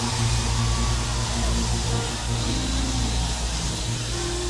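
Church band holding low sustained chords, organ and bass, under the steady noise of a large congregation.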